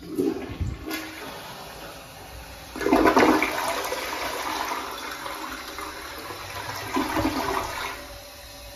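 2007 Western Pottery Aris toilet flushing: water rushes into the bowl as the handle is pressed, growing louder about three seconds in, with a second surge near the end before it drops away.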